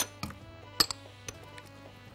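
A metal spoon clinks sharply against the soup pot a little before a second in, with a couple of fainter taps, over quiet background music.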